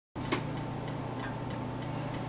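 Steady hum from an electric guitar rig, with one sharp click about a third of a second in and faint ticks from the strings under the picking hand.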